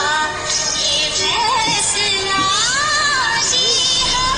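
A song: music with a high singing voice carrying a wavering melody that slides up and back down about two and a half seconds in.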